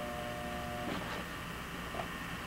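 A pause in speech filled with low background hum: a steady, even-pitched tone that cuts off about a second in, leaving faint hiss.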